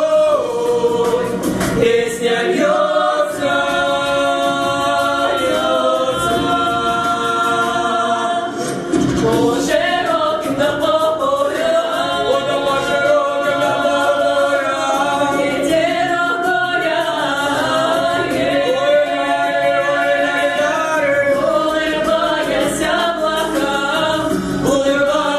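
A small mixed vocal group of four, one male and three female voices, singing a Russian folk song in harmony without accompaniment. The notes are long, held and slowly bending.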